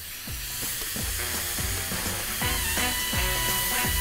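Meat cubes, onions and mushrooms sizzling as they fry in oil in a pan, a steady hiss, under background music with regularly repeating notes.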